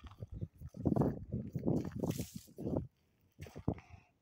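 Footsteps on a dirt forest path strewn with pine needles, irregular steps with rustling and a brief hiss about two seconds in.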